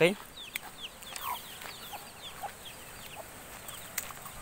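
Chickens calling: a run of short, high peeps that each fall in pitch, with a few lower clucks among them.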